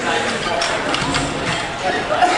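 Voices talking in the background of a gym, with a few short knocks.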